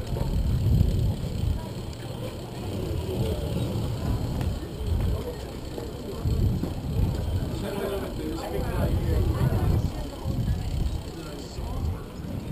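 Wind buffeting the microphone of a handlebar-mounted camera on a moving bicycle: a low rumble that swells and drops in gusts. People's voices are heard faintly from about two-thirds of the way in.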